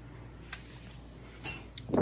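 Faint handling noise from hands working a PVC mold while a finger smooths silicone into its corner: a light click about half a second in and a short soft rub about a second and a half in, over a steady low room hum.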